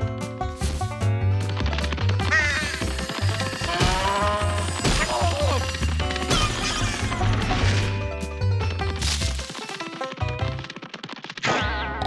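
Cartoon soundtrack: a music score with a steady bass line under comic sound effects, with pitched notes that swoop up and down and a few sharp hits. The bass drops out about two seconds before the end, then the sound swells again.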